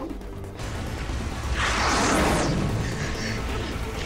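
TV drama soundtrack: a low, rumbling music bed with a loud noisy rush, a crash-like sound effect that swells and fades over about a second, starting about one and a half seconds in.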